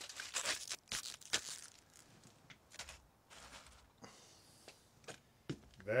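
Aluminium foil being crumpled and folded around a lump of dry ice, in irregular crinkles that are densest in the first second or so and then come more sparsely.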